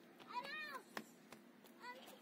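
A cat meowing: one drawn-out meow that rises and falls in pitch about a third of the way in, with another starting right at the end. A single sharp click comes just after the first meow.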